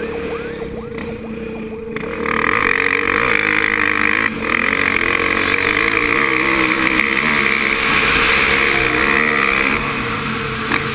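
Kawasaki KX450F four-stroke single-cylinder dirt bike engine running, its pitch rising and falling. About two seconds in it gets much louder as the bike speeds up, with wind noise on the camera microphone.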